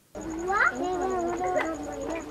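Several women's voices wailing and crying out over one another, with pitch sliding up and down, starting abruptly after a brief moment of near silence.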